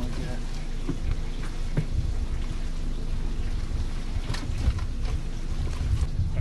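Wind rumbling on the microphone, with light water splashing and a couple of small knocks as a bass is netted from a boat.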